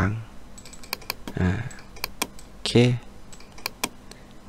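Computer keyboard keystrokes: separate, irregular key clicks while text is entered into a text editor.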